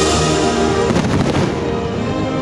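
Orchestral show music playing loudly, with a cluster of firework bangs and crackles over it about a second in.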